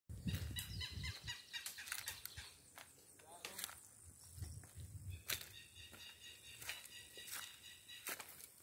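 Footsteps on a stony dirt path, with scattered sharp clicks of shoes on stones, and a faint, high, pulsing animal call near the start and again in the second half. Low rumbles come through on the microphone about a second in and again around the middle.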